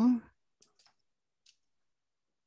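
A few faint, scattered clicks of computer keys while text is deleted and typed into a field.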